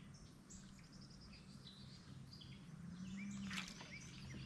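Faint bird calls and chirps, many short notes in quick succession, over a low steady hum. A brief noisy rustle comes just before the end.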